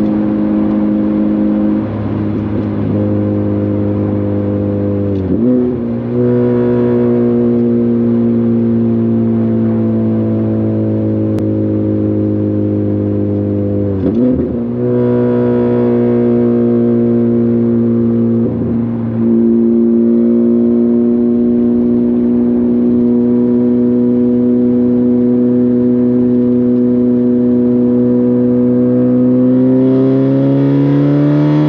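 Honda Civic Type R FK8's turbocharged 2.0-litre four-cylinder, breathing through a catless HKS downpipe and front pipe into a Tomei exhaust, heard from inside the cabin at freeway cruise: a loud, steady exhaust drone. The note dips briefly three times and climbs in pitch near the end as the engine picks up revs.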